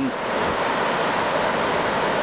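Steady rushing of water pouring over Lepreau Falls, a wide waterfall on the Lepreau River, an even unbroken noise.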